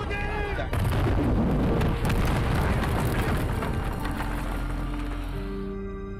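Film soundtrack: a brief shout, then about a second in a sudden loud burst of noise with a deep rumble that slowly dies away over several seconds, under dramatic orchestral music.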